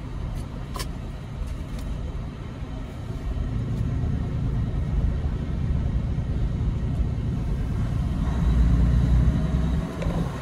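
Semi-truck diesel engine running in a low, steady rumble inside the cab as the truck rolls slowly. There is a sharp click about a second in. The rumble grows louder near the end as the truck pulls ahead.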